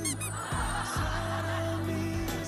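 Background music with long sustained notes, opening with a quick run of short high chirps.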